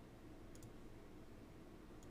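Near silence over a low room hum, with a few faint computer mouse clicks about half a second in and again near the end as the charts are changed.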